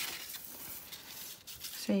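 Sheet of card stock sliding and rustling against a wooden tabletop as hands push paper pieces aside, a soft even scraping noise that fades after about a second and a half.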